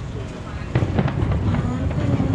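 Fireworks going off: a quick cluster of sharp bangs and crackles beginning about three-quarters of a second in.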